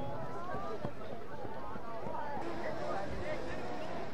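Faint, distant voices of several people talking and calling at once, over a steady low background.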